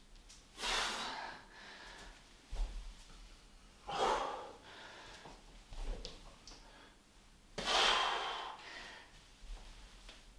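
A man breathing out hard three times, a few seconds apart, from the effort of doing lunges. Faint ticks in between.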